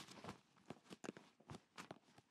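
Faint soft thuds of sneakers landing on a wooden floor as a person jumps forward and back, a handful of separate landings spread through the moment.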